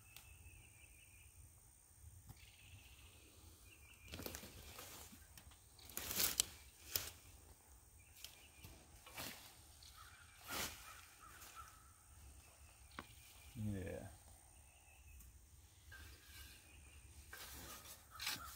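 Faint rustling and crunching of loose soil and sweet potato vines as hands dig and pull them, with a dozen or so short scrapes and snaps scattered through.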